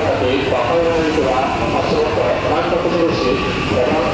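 Electric commuter train running along the station platform, its rumble and wheel noise steady, with a voice heard over it.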